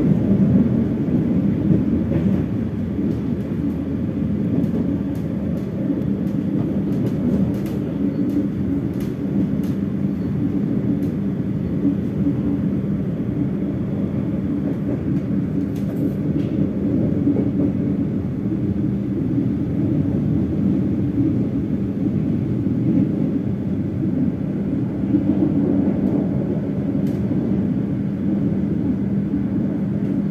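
Argo Parahyangan passenger train running along the track, heard from inside the carriage: a steady rumble with a constant low hum. A few faint clicks come through in the middle.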